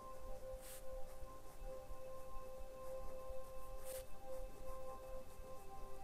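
Sustained, bell-like ringing tones, two pitches held together with a slight pulsing, stepping down to a lower pair near the end. Two brief soft scratches of a pen on paper come through, about a second in and again near four seconds.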